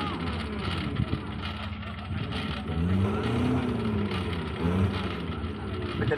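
Off-road 4x4 pickup's engine revving in the mud pit: the pitch climbs and then eases off about three seconds in, with a second, shorter rev near the end.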